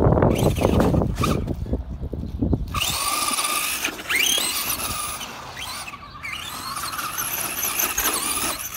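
Traxxas Rustler radio-controlled truck: its tyres churn through snow and grit with the motor running during the first second or so, then the motor gives several short whines, each rising in pitch as the throttle is blipped.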